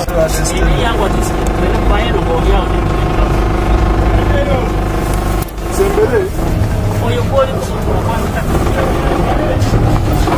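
People talking over a car engine running steadily, with a short break about five and a half seconds in.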